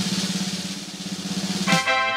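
Drum roll sound effect that swells toward its end. About 1.7 seconds in, it gives way to a held musical chord, the reveal sting.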